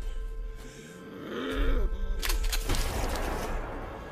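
A guttural, growl-like cry about a second in, then a quick cluster of sharp impacts a little after two seconds, over a steady film score.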